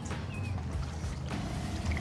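A stock hand pump being worked to inflate an inflatable paddle board, air hissing through its hose, with the hiss growing fuller about a second and a half in. The pump's seals leak.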